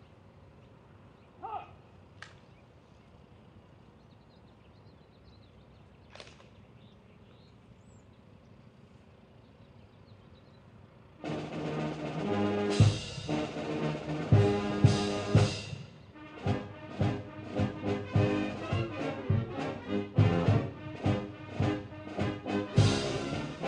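A military brass band with drums strikes up the honors for a major general about halfway through, with heavy drum hits and brass, then settles into a march with a steady beat. Before that there is only quiet outdoor ambience with a few faint short chirps.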